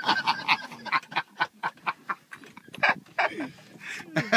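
People laughing in a string of short bursts.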